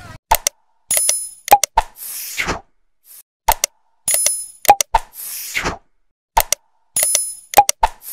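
Sound effects of an animated subscribe button, repeated three times about three seconds apart. Each time there are sharp clicks and pops, a bright bell-like ding and a falling whoosh.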